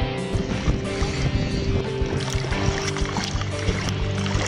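Background music over water sloshing and splashing around a camera held right at the sea's surface.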